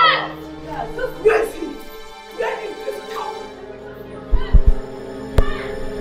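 Women's short shouts and jeering cries, one about every second, over a background music score of held, sustained tones. A few low thumps and a sharp click come near the end.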